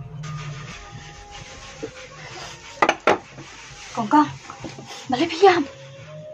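A woman crying and sobbing aloud in short bursts, about four seconds in and again around five seconds in, over soft background music, with a sharp sound about three seconds in.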